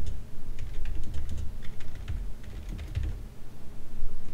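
Typing on a computer keyboard: a quick, irregular run of keystroke clicks as a short line of code is entered.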